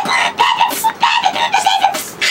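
Human beatboxing: a rapid run of mouth-made drum hits and hissing cymbal sounds, with a high voiced note broken into short stuttering bursts over them.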